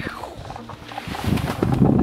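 A man laughing, with music playing under it.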